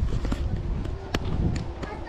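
Footsteps on a paved street while walking, with several sharp knocks from the handheld camera, the strongest just over a second in, over a low rumble of movement on the microphone.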